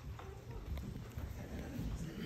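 Shuffling and faint knocks of a congregation sitting back down in wooden pews after a prayer, with low voices under it.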